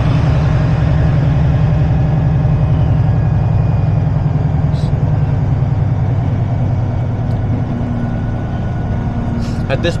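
Semi-truck's diesel engine running steadily, heard from inside the cab as a loud low drone while the truck is slowly maneuvered, easing a little in the second half, with a couple of faint clicks.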